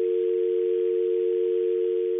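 Telephone dial tone heard over the phone line, a steady two-note hum with faint line hiss: the call has ended and the line is open again.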